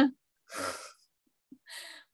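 A woman's audible sigh about half a second in, then a short, fainter breath near the end.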